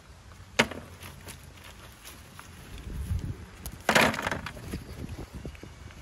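River stones clacking together as they are picked up by gloved hands and tossed into a plastic bucket: scattered small clicks, one sharp knock about half a second in and a louder clatter of rocks a little before the four-second mark.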